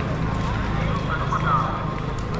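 Crowded market street: people talking in the crowd, footsteps, and a steady low hum of traffic underneath.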